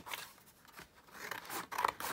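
Scissors cutting through card: a click at the start, then a run of short snips in the second half.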